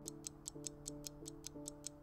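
Countdown timer sound effect ticking fast and evenly, about five ticks a second, over faint background music with held chords.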